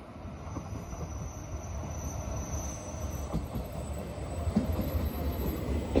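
JR East E721 series 0 electric train pulling into the station, its wheel-on-rail rumble growing steadily louder as it nears. A thin high whine sounds through the first half, and clacks from the wheels crossing rail joints come in the second half.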